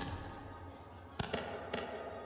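Music fading out, then a few sharp taps or clicks about a second in.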